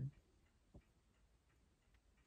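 Near silence in a small room, with a clock ticking faintly.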